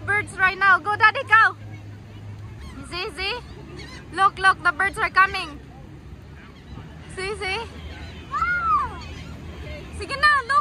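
Gulls calling overhead in quick runs of short, yelping notes: one run at the start, another from about three to five and a half seconds in, then a few longer drawn-out calls near the end, over steady beach background noise.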